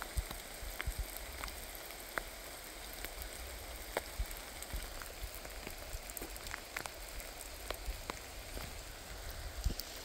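Steady rain, an even hiss with scattered short ticks.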